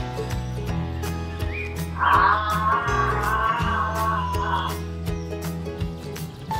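Background music with a steady beat and bass line, with a louder wavering melody line that comes in about two seconds in and drops out near the end.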